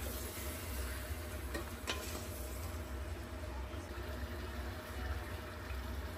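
Faint, steady sizzling of sliced pork, onions and carrots cooking with sake in a stainless steel pot, over a constant low hum. There are a couple of light clicks about two seconds in.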